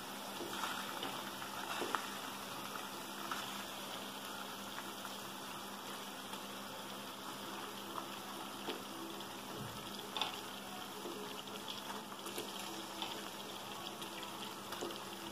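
Chopped onions and green chillies bubbling gently in oil and water in a kadai, with a few soft knocks as whole boiled eggs are set into the pan.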